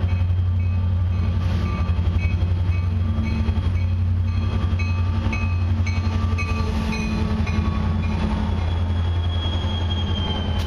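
EMD SD60 and SD40-2 diesel freight locomotives pass at track speed with a steady, heavy low engine drone, followed by empty intermodal flatcars rolling on steel rails. A thin high wheel squeal sets in near the end.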